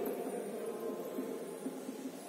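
Faint scratching of a marker writing on a whiteboard over low room noise.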